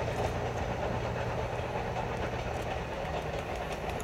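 Steam-hauled passenger train moving away along the line: a steady noise of wheels on track, with a low hum that stops about three seconds in.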